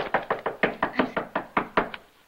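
Rapid, heavy pounding on a door, about six blows a second, stopping just before the end.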